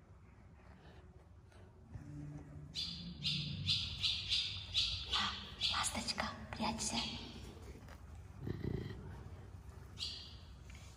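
Tiger cub chuffing (prusten): a quick run of short, breathy puffs through the nose, about three a second, starting about three seconds in and stopping near seven seconds, with a low voiced note under some of them.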